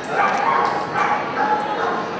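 A dog whining and yipping in short, pitched calls over the chatter of a crowd in a large hall.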